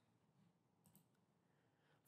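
Near silence: room tone, with a faint click a little under a second in.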